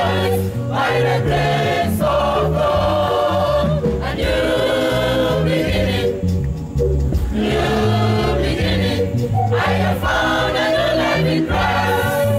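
Gospel choir singing with instrumental backing and a line of low held notes underneath; the voices pause briefly about six seconds in.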